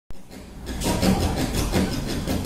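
Acoustic guitar strummed in a steady rhythm, about four strokes a second, starting just under a second in, as the intro before the singing.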